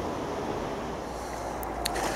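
Steady low outdoor background noise with no clear source, with two faint clicks near the end.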